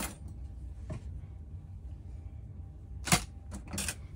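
A few sharp clicks and taps from handling a small electronic component and tools on a workbench, the loudest about three seconds in, followed by a short rattle, over a steady low hum.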